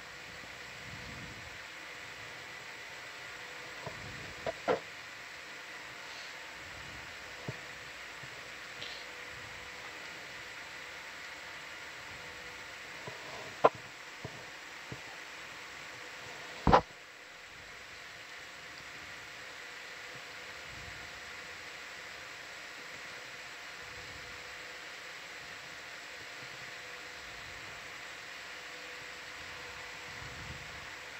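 Steady hiss with faint steady hum tones on an open audio line, broken by a handful of sharp clicks. The two loudest clicks come about 14 and 17 seconds in, and after the second the hiss drops a little.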